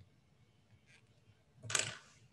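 Brief handling noise about 1.7 seconds in as a small capacitor is taken off the LCR meter's test clips, over a quiet room hum.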